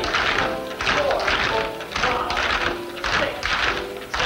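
Tap shoes striking a floor in rapid clusters of taps, danced over music.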